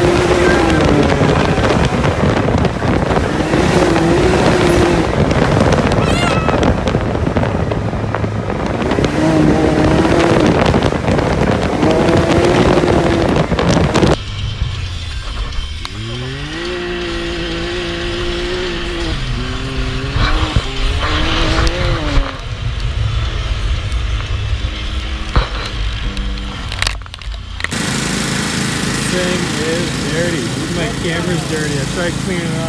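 Can-Am Maverick X3 side-by-side's turbocharged three-cylinder engine running through an aftermarket MBRP exhaust as it is driven, its pitch rising and falling with the throttle. For the first half a heavy rushing noise lies over it. After an abrupt change about halfway, the engine note is clearer, sweeping up and holding as it revs.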